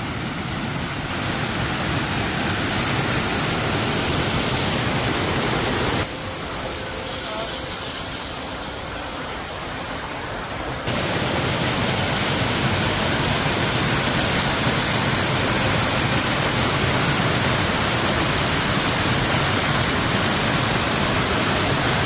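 Water rushing steadily over a rocky cascade of a small creek waterfall, somewhat quieter from about six to eleven seconds in, then louder again.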